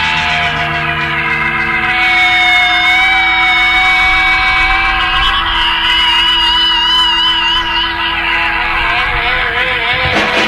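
Instrumental freakout passage of a psychedelic garage-rock track: held organ and guitar notes slide up and down in pitch over a low drone, with a wavering high note about six seconds in. There is no steady drum beat in this passage.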